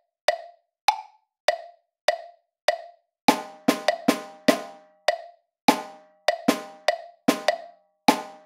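Metronome clicking at 100 beats a minute, a sharp wood-block-like tick a little more than once a second and a half... about every 0.6 s, alone at first as a count-in. About three seconds in, a drum joins on top of the clicks, playing the written rhythm with triplet figures.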